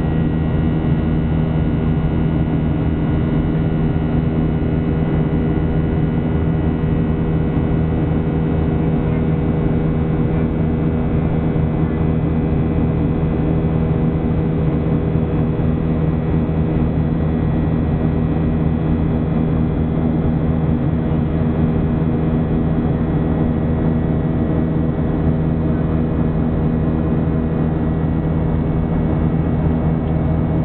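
Steady cabin drone of a Boeing 737-800's CFM56-7B turbofan engines in the climb, heard from a window seat inside the cabin: an even rushing noise with several steady hum tones underneath.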